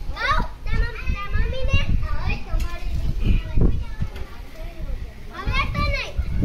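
High-pitched children's voices calling out in several short bursts, over an uneven low rumble.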